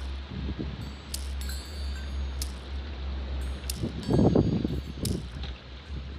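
Meditation music: wind chimes ring in repeated high strikes over a steady low drone, with a louder, deeper swell about four seconds in.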